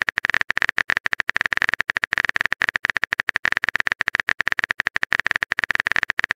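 Phone keyboard typing sound effect: a rapid, even run of clicks, about ten a second, as a message is typed.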